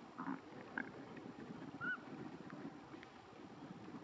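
A few faint, short bird calls and chirps, the loudest a brief arched note about two seconds in, over a low, steady rumble.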